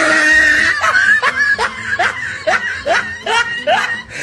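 Edited-in laughter: a loud run of about eight short rising 'ha' bursts, two a second, after a noisy rush in the first second.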